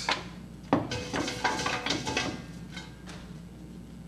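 A hand rummaging through paper slips in a large stainless steel pot. There is a sharp knock about three-quarters of a second in, followed by faint rustling and handling noise.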